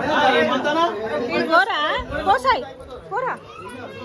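A group of people talking over one another, with a few louder, swooping calls in the first half.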